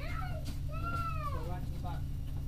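Steady low drone of a bus engine heard from inside the moving bus. Over it come a few high-pitched cries that rise and fall in pitch, the longest lasting nearly a second about midway through.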